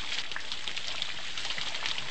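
Steady rain falling, an even hiss with faint scattered drop ticks.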